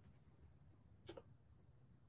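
Near silence: faint room tone with one soft click about a second in.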